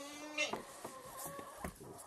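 Quiet barn sounds: a faint steady buzzing tone for about the first half second, then a few soft knocks and rustles.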